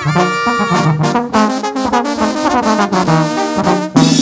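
Instrumental break of a live Mexican regional song: a brass section of trumpets and trombones plays the melody over a stepping bass line.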